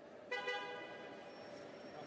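Two quick, short toots of a car horn a fraction of a second in, over the steady hum of a car assembly plant.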